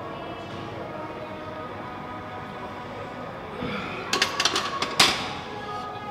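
Background music with held tones. About four seconds in, a quick cluster of sharp clanks, the loudest near the five-second mark, as a loaded barbell is set back on the bench-press rack.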